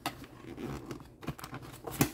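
Cardboard box being handled as its flap is worked open: faint scraping with a couple of light knocks.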